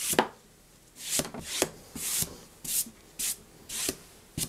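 A wide flat brush swept in quick strokes across paper, a scrubbing swish about seven times, roughly one every half second.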